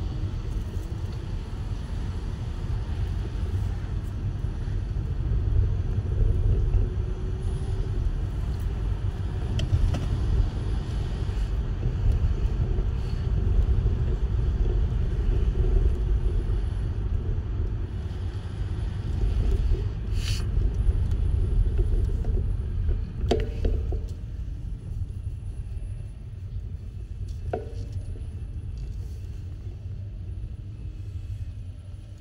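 A car driving along a road, heard from inside its cabin: a steady low rumble of road and engine noise that swells in the middle, with a few short clicks in the second half.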